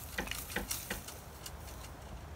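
Footsteps crunching through long dry grass: a few short, irregular crackles over a low rumble of wind on the microphone.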